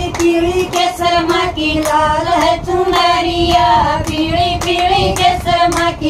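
A group of women singing a Haryanvi devotional bhajan to the Mother goddess together, clapping their hands in time with the song.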